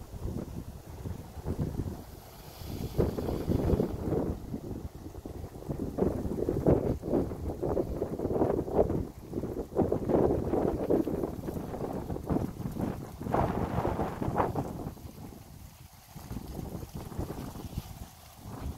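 Wind buffeting a handheld phone's microphone: a gusty rumble that swells and fades, loudest through the middle and dying down near the end.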